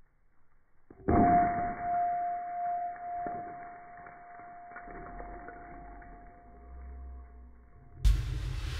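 A steel hammer smashing a crystal rock, heard in slow motion: a sudden dull hit about a second in, then a single steady ringing tone that fades slowly and cuts off just before the end. The whole sound is deep and muffled because it is slowed down.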